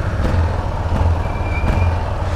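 Yamaha XT660's single-cylinder engine running steadily at low revs as the bike moves off from a stop, with a faint high whine in the second half.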